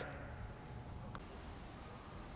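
Faint room tone with a low, even rumble and a single brief click about a second in.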